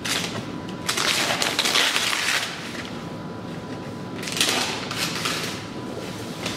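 Gift wrapping paper being torn off a box and crinkled by hand, in two long rips: one about a second in, another a little past four seconds, with softer rustling between.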